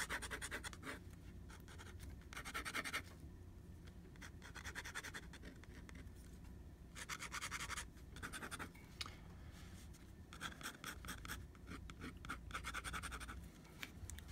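A fountain pen nib scratching across paper in fast hatching strokes. The strokes come in quick bursts of about a second, with short pauses between.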